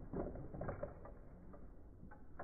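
Plastic clicking and rattling of Akedo toy battle controllers and figures as the figures' arms are driven into punches, a quick cluster of clicks in the first second, then fainter rattles.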